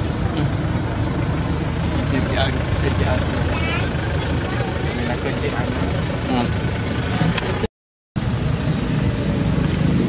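Steady outdoor background noise with a low rumble, faint voices and a few short high chirps. The sound drops out completely for a moment near the end.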